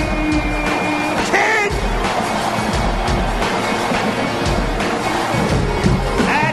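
Loud arena music with a heavy bass beat thumping about once a second, over a dense wash of crowd noise.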